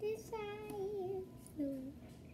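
A girl singing wordlessly: one long, wavering, drawn-out note, then a short lower note near the end.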